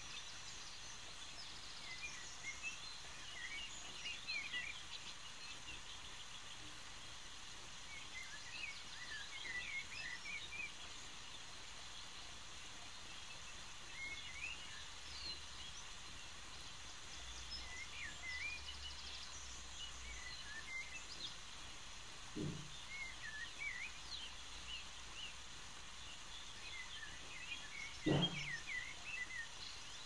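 Birds chirping in short, scattered clusters over a steady faint background hiss, with two brief low thumps late on, the second and louder one near the end.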